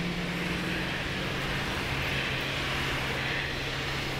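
Vehicle engine idling steadily, a constant low hum with no change in pitch.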